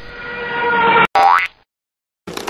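Synthesized logo-sting sound effect: a sustained tone swells louder for about a second and cuts off, followed by a short upward-gliding boing.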